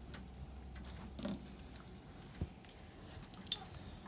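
Printer running its diagnostic checks: a faint steady low hum with a few light clicks about a second apart, the sharpest near the end.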